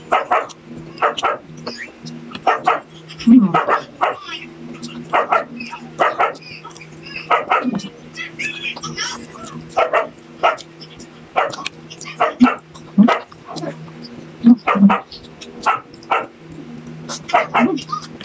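A dog barking repeatedly, short barks about once a second. A low steady hum drops out and returns several times underneath.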